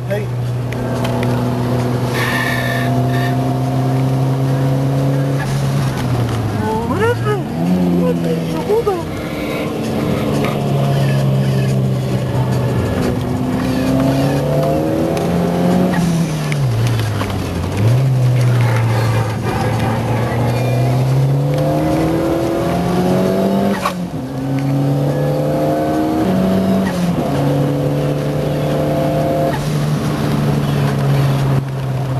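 Car engine being driven hard on a circuit. Its revs hold and climb, fall sharply about seven and seventeen seconds in, and rise again in steps.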